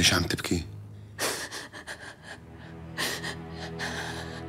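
A woman's emotional gasping breaths: a brief catch of the voice at the start, then a sharp breath about a second in and another near three seconds.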